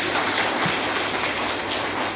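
Audience applauding steadily, a dense clatter of many hands clapping.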